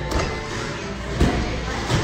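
Background music playing, with three short thumps.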